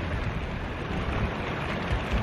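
Steady rushing noise of wind on the microphone and tyres rolling along a path, heard from a camera riding on a moving recumbent trike.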